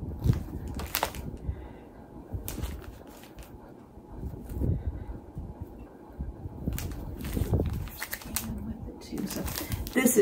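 Squares of precut quilting cotton being leafed through and handled: soft rustling and rubbing of fabric, with scattered light clicks and taps.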